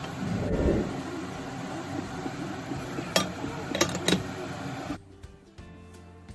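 Pan of chicken innards simmering and bubbling in adobo braising liquid, a steady hiss with a low thump near the start and a few sharp clicks around three to four seconds in. About five seconds in the sound drops abruptly to a much quieter level.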